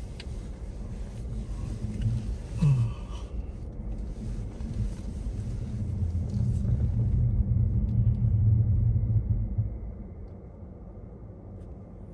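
Low rumble of a car heard from inside its cabin as it creeps forward in a drive-through line, growing louder in the middle and dropping back about ten seconds in as the car slows to a stop.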